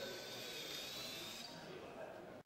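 Faint hall background noise with indistinct voices and a thin, slightly wavering high whine.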